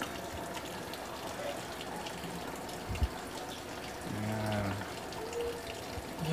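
Water pouring steadily from the inlet into the tub of a Panasonic 6.5 kg top-loading automatic washing machine as it fills to its set water level, with a single low thump about three seconds in.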